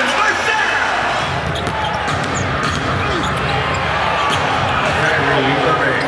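Arena game sound during live basketball play: steady crowd noise in a large hall, with a basketball bouncing on the hardwood court.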